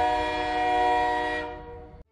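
Passenger train's horn held as one long chord of several steady tones over the low rumble of the train moving alongside the platform. The horn fades in the last half second and then cuts off suddenly.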